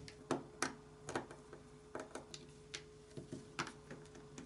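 Screwdriver backing small screws out of a black plastic project box: about a dozen light, irregular clicks and taps as the tool engages the screw heads and the box is handled.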